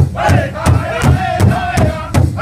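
Powwow drum group singing high in chorus over a large shared rawhide drum struck in unison, about two and a half beats a second. The voices break off briefly at the very start and come back in together.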